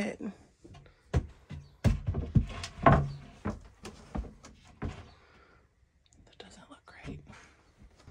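Plywood cabinet panel knocking and bumping against the cabinet's wooden frame and floor as it is set in place for a test fit, a series of irregular wooden knocks over the first five seconds, then quieter handling.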